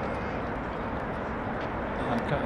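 Steady outdoor background noise: an even hiss with no distinct sounds in it.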